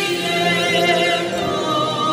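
A choir singing in sustained, held notes that shift in pitch every half second or so.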